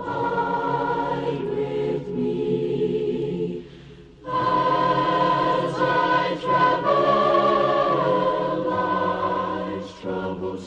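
Family chorus singing a gospel hymn in held, sustained chords. The singing drops away briefly about four seconds in, then returns louder for the next phrase.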